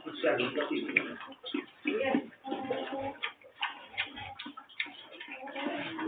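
Domestic pigeons cooing, with scattered sharp ticks.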